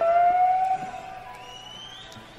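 Electric guitar holding one long note in a slow blues, bent slowly upward as it sustains and fades away.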